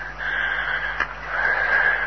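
Steady hiss and background noise of an old handheld cassette field recording, with a single sharp click about a second in at a break in the tape.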